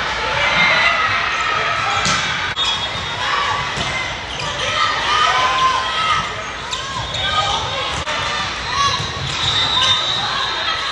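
A volleyball being struck during a rally in a gym, several sharp smacks a few seconds apart that echo in the hall, over steady crowd chatter and players' voices.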